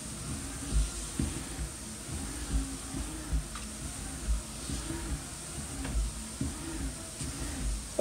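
PROGEAR 190 manual treadmill being walked on: footfalls thud on the deck about once or twice a second over a low steady rumble of the belt running over its rollers.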